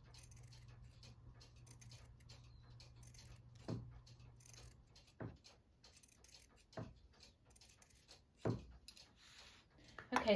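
Fabric scissors snipping fringe into a fleece scarf: four short, sharp snips about a second and a half apart. A low steady hum runs under the first half.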